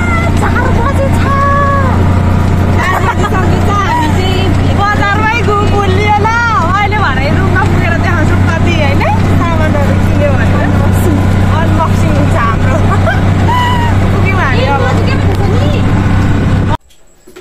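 Steady low drone of an auto-rickshaw in motion, heard from inside the passenger cabin, under young women's excited shouting and laughing voices.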